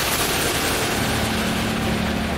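Sound effect of an animated logo intro: a steady, dense rushing noise with a faint low hum underneath.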